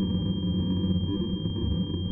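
Live electronic music played from a laptop and a small knob-topped electronics box: a dense low synthesizer drone with a thin, steady high tone held above it.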